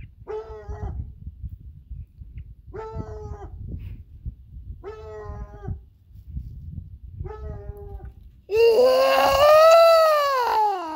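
A dog howling: four short howls of even pitch about two seconds apart, then a louder, long howl that rises and falls, beginning near the end.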